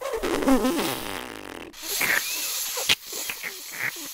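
Cartoon fart sound effect: a long, sputtering fart with wavering, falling pitch lasting nearly two seconds, followed by a hissing rush of noise and a sharp click near the end.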